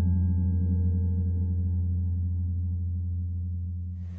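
Deep, steady drone on the soundtrack, with a wavering tone above it, fading slowly toward the end.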